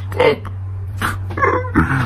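A man laughing in short bursts, over a steady low hum.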